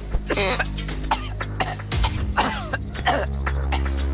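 A man coughing in short fits several times over sustained background film music. The music changes to a fuller, held chord about three seconds in.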